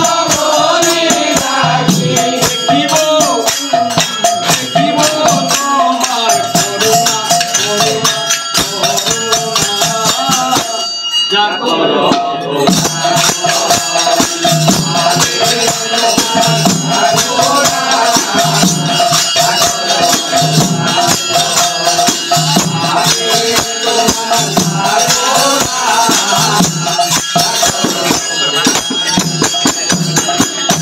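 Devotional kirtan: a group of men singing in chorus over steadily clashing hand cymbals and regular low drum beats. The music thins out briefly about eleven seconds in, then picks up again.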